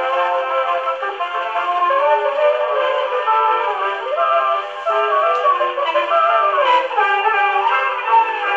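A 1920 Columbia 78 rpm jazz dance-orchestra record played on a 1919 Victor Victrola VV-VI acoustic phonograph. The music sounds thin and boxy, with no deep bass or high treble.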